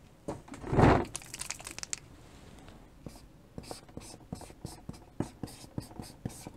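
Chalk on a blackboard: a run of short taps and scratches in the second half as characters are chalked onto the board. About a second in there is a single louder noisy rustle or thump.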